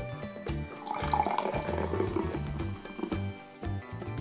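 Carbonated soda being poured from a can into a glass, over background music with a steady beat.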